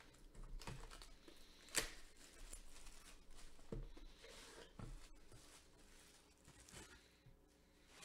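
Plastic shrink-wrap being peeled and torn off a sports-card hobby box: faint crinkling and tearing, with small clicks. A sharp snap comes a little under two seconds in, the loudest sound.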